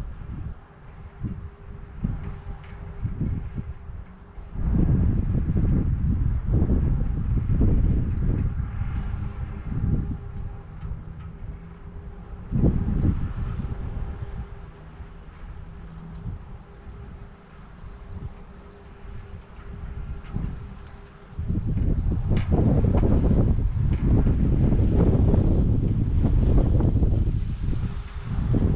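Wind buffeting the microphone in gusts, a low rumble that swells strongly about five seconds in, eases off for a while, and comes back loud from about twenty-two seconds on.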